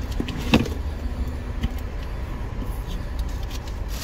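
Low, steady rumble of a car idling, heard from inside its cabin. A single sharp click comes about half a second in.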